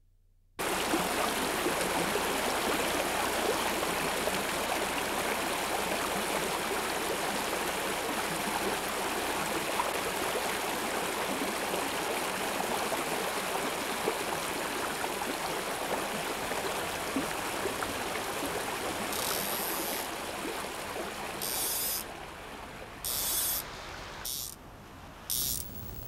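A shallow river running over rocks, a steady rushing of water that comes in suddenly about half a second in and eases in the last few seconds. Near the end there are several short, high, hissing bursts.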